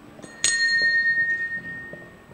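A single strike of the show-jumping judge's bell about half a second in, ringing on with a clear high tone and fading over about a second and a half. It is the signal for the rider to start the jump-off.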